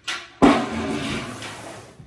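Metal tub set down hard: a loud clang about half a second in that rings and fades over about a second and a half.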